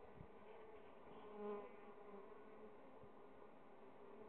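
Faint buzzing of honeybees flying around their hives, with one bee passing close by about a second and a half in, its buzz briefly swelling and fading.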